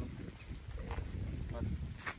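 A few faint, brief voice sounds over a low, steady outdoor rumble.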